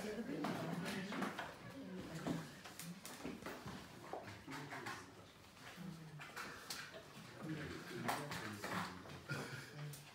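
Low, indistinct voices of people talking in the background, with no single clear speaker.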